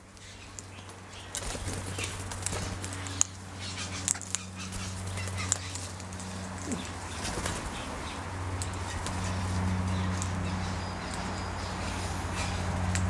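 Australian king parrots pecking and husking seed on a metal feeding tray: scattered sharp clicks and taps, over a steady low hum.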